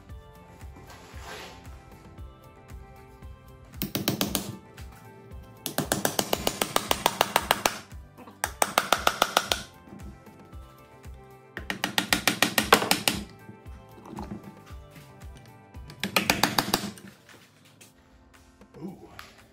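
Ratchet wrench clicking in five bursts of fast, even clicks as case bolts on a Jatco CVT transmission are turned out.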